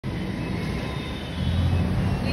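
Low rumble of street traffic, growing louder a little over a second in.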